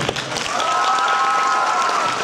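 Audience applauding, with one long high-pitched cheer held over the clapping.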